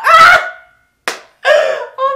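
A man's excited, high-pitched squeals without words, broken about a second in by a single sharp slap.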